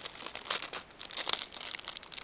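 Small clear plastic bag crinkling and crackling in the fingers as a bead is worked out of it: a run of irregular, quick crackles.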